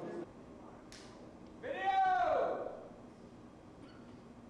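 A person's voice making one drawn-out call, rising then falling in pitch, around the middle, after a sharp click about a second in.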